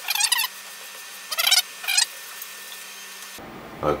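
A cloth dabbing and rubbing borax solution over a sheet of wood, heard as three short scratchy bursts in the first half, over a faint steady hum.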